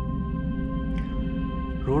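Background score music: steady held notes over a low drone, with a man's voice starting at the very end.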